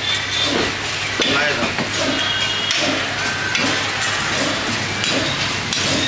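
A meat cleaver knocking on a wooden chopping block as beef is cut, with occasional sharp knocks, under background voices.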